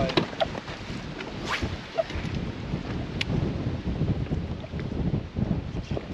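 Strong wind buffeting the microphone on an open boat deck, a steady rough rumble, with water chop and a few faint clicks.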